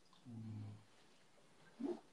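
A faint, short, low hum of even pitch, like a man's 'mm', lasting about half a second. A voice starts just before the end.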